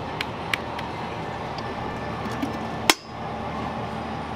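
Stainless-steel soup-well lid and ladle clinking against the metal pot several times, the loudest clank about three seconds in, over steady background noise.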